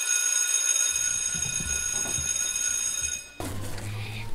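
School bell ringing with one steady, high-pitched tone that cuts off abruptly about three and a half seconds in, the signal for the break as pupils put on their coats.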